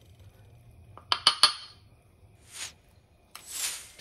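Three quick, sharp ceramic clinks about a second in, with a short ring: a small mortar being tapped, likely with its pestle, to knock powdered saffron into the pan.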